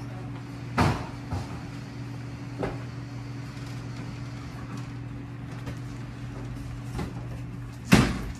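Otis hydraulic elevator's sliding doors closing, with a sharp knock at the very end as the panels meet. There are a few lighter knocks earlier and a steady low hum throughout.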